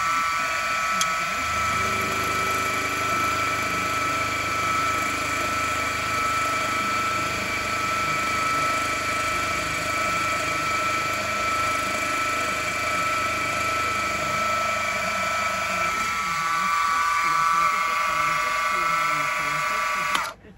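Milling machine spindle running with an end mill cutting a carbon-fibre block: a steady whine made of several held tones. A lower drone sits under it from about a second and a half in until about four seconds before the end.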